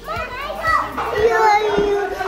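Young children talking in high voices.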